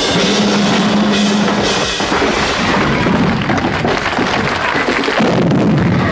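Loud rock band music dominated by a pounding drum kit with cymbals, running without a break.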